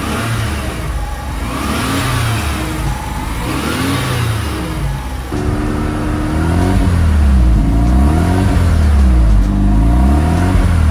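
Mazda RX-7 FD's 13B twin-turbo twin-rotor rotary engine being revved in short blips, its pitch rising and falling with each one. Two slower blips come first, then about halfway a quicker run of roughly one blip a second that grows louder.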